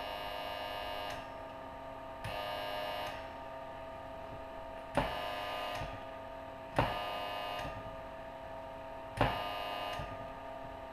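A Tesla coil's primary, driven into a metal-tray dummy load, buzzing in repeated bursts. Each burst lasts under a second, and they come about two seconds apart. Most bursts start with a sharp snap, and a fainter hum carries on between them.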